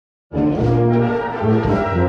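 Brass band playing, with low brass holding long bass notes beneath higher parts; the music starts abruptly just after the beginning.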